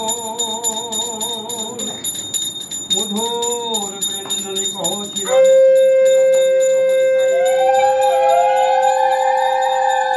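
Small brass puja hand bell rung rapidly and continuously through the incense aarti, with wavering voices over it early on. About five seconds in, a conch shell is blown, a loud long steady note that holds to the end, while a second wavering note rises and falls above it.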